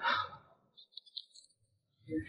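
A man's voice ending a short spoken line, "明白吗?" ("Understand?"), in the first half second. After it come a few faint, brief high sounds and then quiet.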